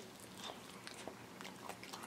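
Faint chewing of a bite of chicken wing, with soft scattered mouth clicks.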